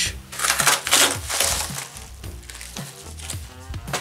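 Plastic padded mailer being torn open and crinkled by hand, loudest in the first second or so, then softer rustling of the plastic, over background music.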